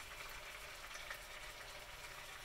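Chicken and steak tips frying in a pan, a faint steady sizzle.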